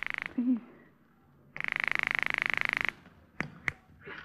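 Telephone ringing as a radio sound effect: a buzzing, rapidly pulsing ring that cuts off just after the start, then a second ring of about a second and a half. Two sharp clicks follow near the end.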